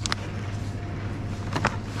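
Plastic-wrapped meat tray being handled: a sharp crackle at the start and two short ones about one and a half seconds in, over a steady low hum.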